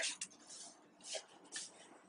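A few faint, brief rustles of packaging as hands search through a subscription box.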